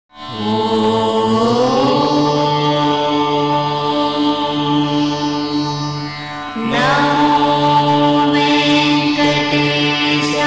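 Indian devotional music: a mantra-like chanted line held over a steady drone. The pitch glides up about a second and a half in, and again after a brief dip near seven seconds.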